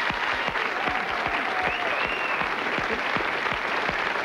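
Studio audience applauding steadily, with dense hand claps.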